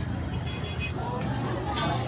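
City street traffic: vehicles running steadily past, with faint voices of passers-by.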